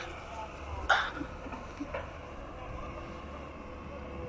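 Distant excavator diesel engine running with a steady low hum. A single short, sharp, voice-like sound about a second in is the loudest moment.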